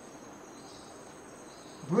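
Crickets chirring in a steady, high-pitched drone.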